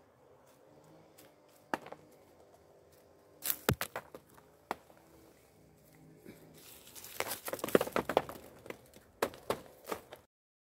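A plastic olive rake combing through olive branches: leaves rustling and twigs clicking, with olives dropping onto a plastic sheet. A few scattered clicks come first, then a denser spell of crackling and rustling from about the middle to near the end.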